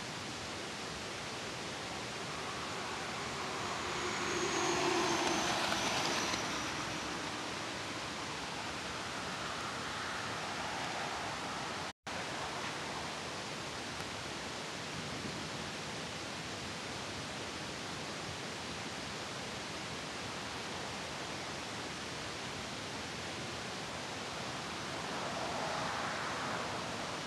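Steady rushing road noise of a moving car heard from inside the cabin, swelling for a couple of seconds about five seconds in, with a momentary dropout about halfway through.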